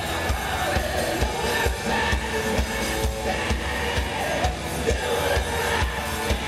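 Live hard rock band playing loud: distorted electric guitars over a steady, regular kick-drum beat, recorded from the crowd in an arena.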